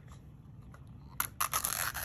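A small plastic wrapper crinkling and tearing in the hands, starting about a second in with a dense, crackly rustle.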